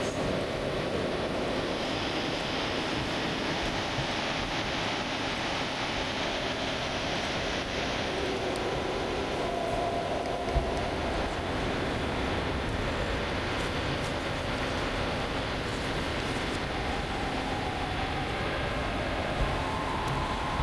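A steady, even background noise with a low rumble, like open-line hiss on a remote video link, with one brief knock about ten and a half seconds in.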